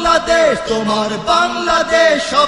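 A solo voice singing a Bengali gojol, holding long notes that bend and glide in pitch, in a chant-like melody.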